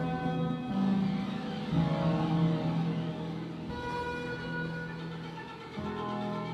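Experimental electronic music: a low held drone with sustained higher notes that change every second or two, and faint pitch glides sweeping up and down over them.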